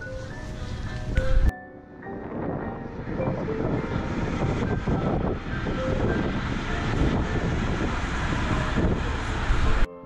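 Background music with a steady melody, mostly covered from about two seconds in by a loud, even rushing of wind on the microphone that cuts off suddenly just before the end.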